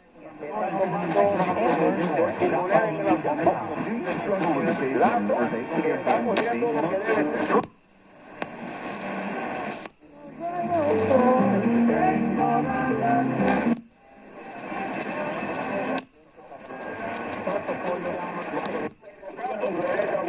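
Medium-wave AM broadcasts playing through an Elite Field radio's speaker as the radio is tuned up the band one station at a time: short stretches of talk and then music from distant stations. Each stretch cuts off abruptly in a brief silent gap as the tuner jumps to the next frequency, five times in all.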